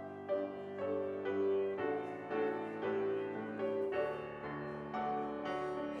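Grand piano playing a hymn introduction in steady, evenly spaced chords, just before the congregation begins to sing.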